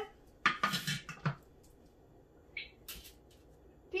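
Plastic measuring cup set into the opening of a Thermomix lid: a few clattering knocks in the first second and a half, then a few light clicks near the end.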